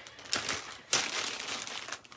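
Plastic bag of acrylic beads crinkling as it is handled, with a few sharper crackles.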